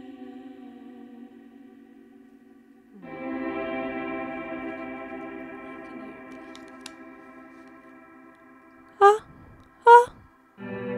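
Sustained electronic keyboard chords with effects, sounding like an ambient pad: a held tone fades over the first few seconds, then a new chord comes in about three seconds in and slowly dies away. Near the end there are two short, loud sounds that rise in pitch.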